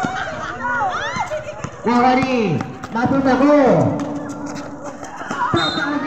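Several people shouting and calling out over a basketball game, with loud drawn-out calls rising and falling in pitch about two and three seconds in.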